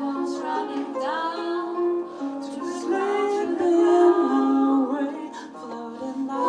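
A female lead voice and four backing singers singing in close harmony, accompanied by a plucked harp.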